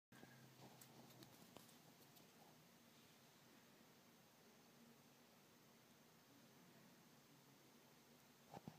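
Near silence: faint room tone, with a few faint ticks in the first two seconds.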